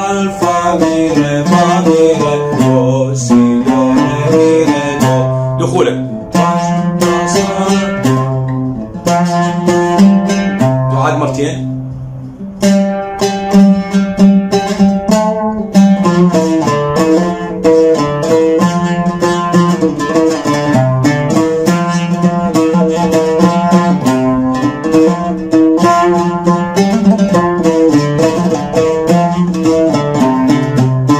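Oud playing a song melody, a continuous run of plucked notes with short breaks about nine and twelve seconds in.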